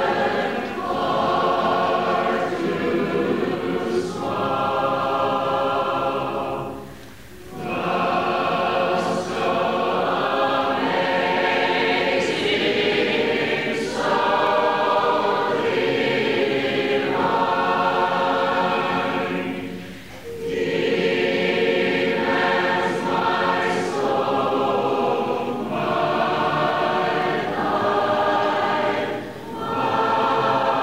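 A choir singing in long, held phrases, with brief breaks between phrases about seven, twenty and twenty-nine seconds in.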